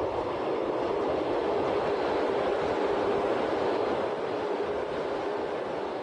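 A train running, heard as a steady rushing rumble that builds in the first second, holds, and eases slightly near the end.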